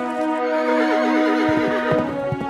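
A horse whinnying over steady background music, one quavering call lasting about a second and a half. Quick hoofbeats of galloping horses begin near the end.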